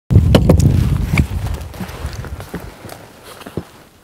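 Knocks and sharp clicks of a motorcycle's aluminium top case being handled and shut, over a low rumble that fades away within about two and a half seconds.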